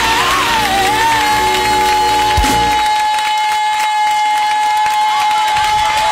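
Song ending: a singer runs through a few wavering notes, then holds one long high note. The instrumental backing underneath stops about halfway through, leaving the held note almost alone.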